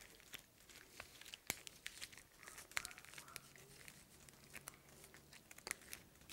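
Faint rustling and small clicks from the sequinned, jewel-studded shoulder pieces and bead necklace of a Myanmar traditional dance costume as they are handled and fastened, with a couple of sharper clicks.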